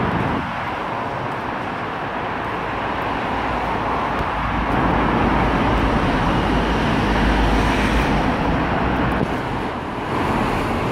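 City street traffic noise, with a vehicle's low engine rumble building about five seconds in and fading near the end.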